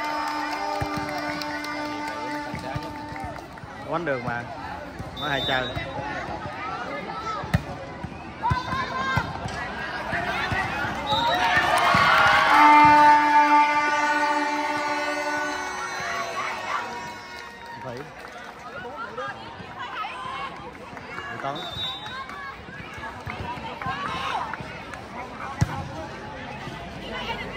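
Spectators at a volleyball match shouting and chattering, swelling into a loud cheer around the middle as a rally ends. A few sharp slaps of the volleyball being struck, and twice a steady held tone sounds over the crowd.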